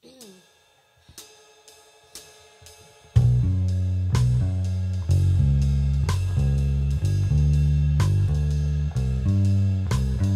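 Live band music: a held chord with a few light cymbal ticks, then about three seconds in the full band comes in loudly with bass guitar, drum kit and cymbals in a steady groove.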